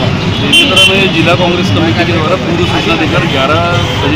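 People talking at a roadside over steady road-traffic noise.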